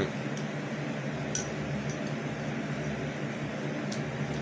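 Steady low hum and hiss of a running fan, with a couple of faint clicks in the first second and a half.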